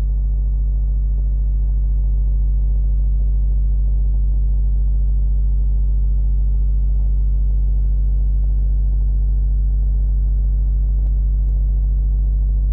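Loud, steady low electrical hum, like mains hum on the recording, with no change throughout.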